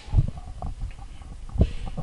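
Handling noise on a handheld microphone: low rumbling bumps and rubbing as the mic is moved, with two louder thumps, one just after the start and one near the end.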